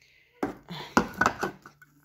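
Metal soup cans knocking and clinking against one another and the countertop as they are handled, a quick run of knocks in the middle of the moment.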